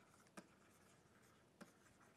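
Faint tapping and scratching of a stylus writing on a tablet, with two small clicks, one about half a second in and one near the end.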